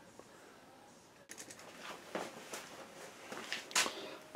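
Quiet room tone for the first second, then soft handling noises: a leather pouch being moved by hand over a tabletop, with faint rustles and small taps and a sharper click shortly before the end.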